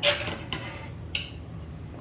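Three short clicks and rustles of kitchen handling over a steady low hum. The first, right at the start, is the loudest, and the last comes just after a second in.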